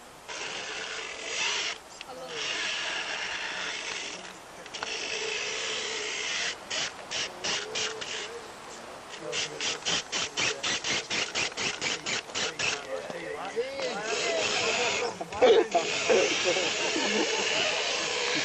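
RC rock crawler's small electric motor and drivetrain running as it crawls over boulders. The throttle is worked in short pulses, about four a second, for a few seconds around the middle.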